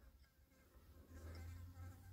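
Near silence, with a faint low hum and, in the second half, a brief faint buzz.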